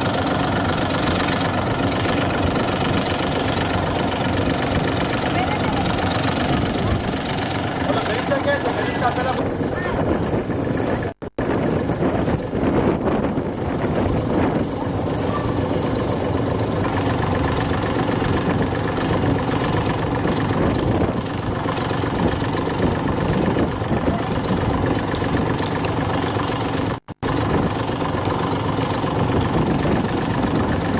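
An engine idling steadily, with a continuous even hum. The sound cuts out briefly twice.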